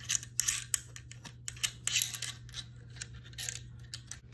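Metal and plastic parts of a gimbal's phone holder and mounting plate clicking and scraping as they are handled and fitted together, in a few short clusters of clicks. A steady low hum runs underneath.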